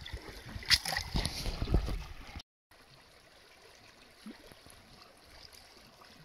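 A hand splashing and sweeping through shallow, icy lake water at a rocky shore, in loud, irregular splashes with low thumps. About two and a half seconds in the sound cuts off, and the rest is faint, steady lapping of rippling lake water.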